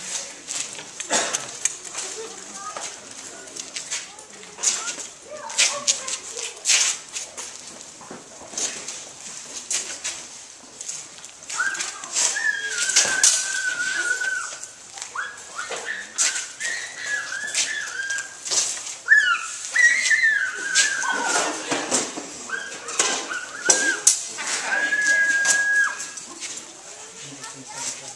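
Rapier blades clicking and clashing in a fencing bout, with scuffs of footwork. Through the middle stretch a thin, high whining tone sounds in pieces a second or two long.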